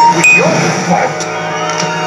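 A film soundtrack playing through a TV speaker: background music with a steady low drone and a few held notes, under characters' dialogue.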